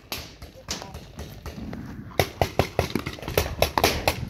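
Paintball markers firing: a rapid, irregular run of sharp pops, about five a second, setting in about halfway through. Before that there are only scattered clicks.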